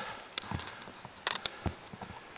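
A few short, sharp clicks: one about half a second in, then a close group around the middle of the second second, followed by a softer knock.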